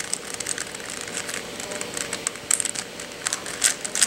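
Plastic layers of a master axis cube (a 4x4 shape-mod twisty puzzle) being turned by hand: a string of irregular light clicks and scrapes as the pieces slide past one another, busier in the second half.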